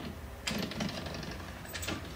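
A louvered closet door rattling and clattering as it is pulled open: a sudden rapid rattle about half a second in, then a second short clatter near the end, over a steady low hum.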